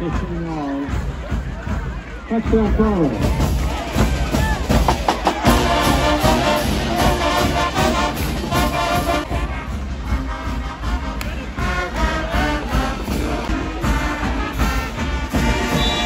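School marching band in the stands playing brass and drums, a loud rhythmic tune that starts about three seconds in, over crowd shouting.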